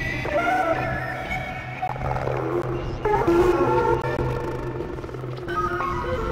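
Experimental electronic synthesizer music: layered held tones that step and sometimes glide between pitches, over a steady low hum.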